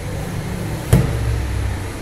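Handling noise from an opened tablet and a plastic prying pick on a silicone work mat: one sharp click about a second in, over a steady low background rumble.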